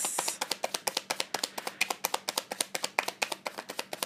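A deck of tarot cards being shuffled by hand: a quick, even patter of light card clicks, about eight to ten a second.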